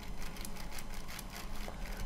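Faint rapid typing on a computer keyboard, about ten light clicks a second, over a low steady hum.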